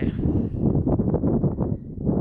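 Wind buffeting the microphone: a loud, uneven low rumble that dips briefly near the end.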